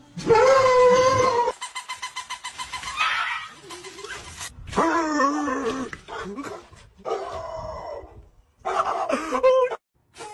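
A dog howling and whining in a series of wavering, pitched cries with short gaps between them, one held cry near the start followed by a fast pulsing stretch.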